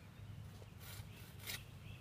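Faint scraping and rustling of a leafy tree branch being handled and worked with a pruning pole, with two short scratchy scrapes about a second and a second and a half in.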